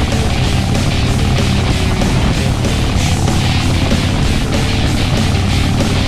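Background music over the steady drone of a 2005 Harley-Davidson Heritage Softail's V-twin with Vance & Hines exhaust, cruising at an even speed.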